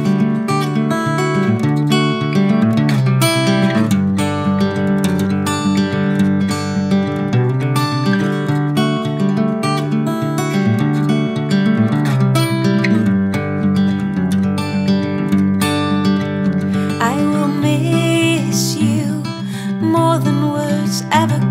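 Acoustic guitar playing an instrumental passage of a gentle song, picked chords in a steady, even rhythm.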